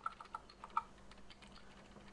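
Faint computer keyboard key presses: about five quick clicks in the first second, then a few fainter ticks.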